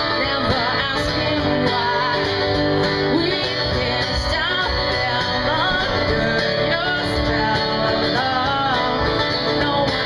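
A woman singing a song live, accompanied by a man playing guitar.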